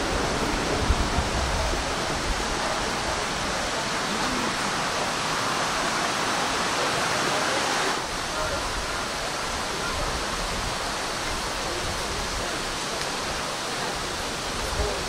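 A steady rushing noise with faint voices under it, dropping slightly in level about eight seconds in.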